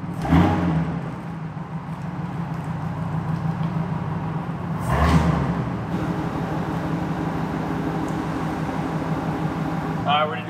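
Ford SVT Lightning pickup's supercharged 5.4-litre V8 running steadily as the truck reverses, with two brief rises in throttle, one just after the start and one about five seconds in.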